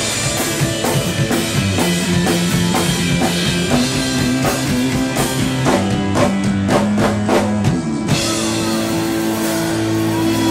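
A rock band playing live without singing: a drum kit with electric guitar and bass. There is a run of hard drum hits about six to eight seconds in, then held guitar and bass notes.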